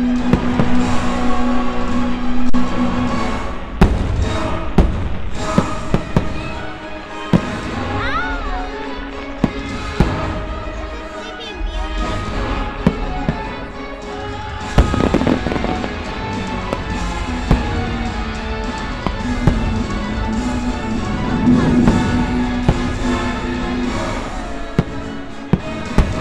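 Fireworks bursting in repeated sharp bangs and crackles over loud show music playing throughout.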